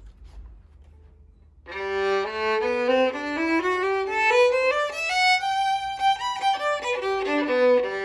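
A Gliga St. Romani II full-size (4/4) violin being bowed. After a short pause it plays a run of notes that climbs step by step from a low note, comes back down, and ends on a long held note.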